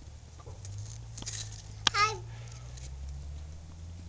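A young child's single short "hi" about two seconds in, just after a sharp click, over a steady low rumble.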